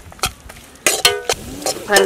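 Tomatoes and green chillies frying in an iron kadai with a soft sizzle, while a metal ladle stirs and scrapes them, knocking against the pan several times and ringing briefly about a second in.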